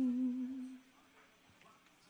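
A woman's sung note, unaccompanied and held with vibrato at the end of a phrase, fades out under a second in; near silence follows.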